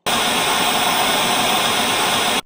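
Steady hiss of TV static, an even white-noise sound effect that starts abruptly.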